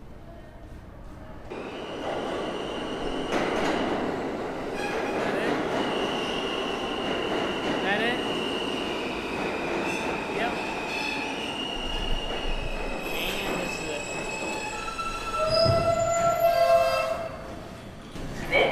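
New York City subway train pulling into the station. A loud rumble starts about a second and a half in and carries on, with high steady wheel squeal over it. Lower squeals come near the end as it slows.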